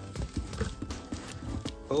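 Bubble-wrapped packages being handled and shifted inside a cardboard box: a run of irregular soft knocks and bumps.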